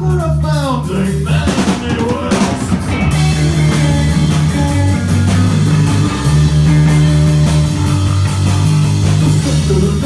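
Live rock band playing an instrumental passage: electric bass, electric guitar and drum kit. The cymbals and drums fill in fully about three seconds in, over steady bass notes.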